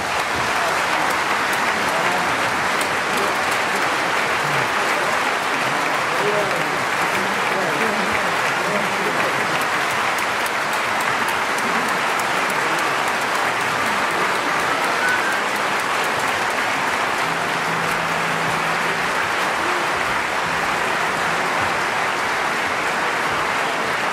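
A large concert-hall audience applauding steadily, a sustained ovation as an orchestral performance ends, with a few voices heard among the clapping.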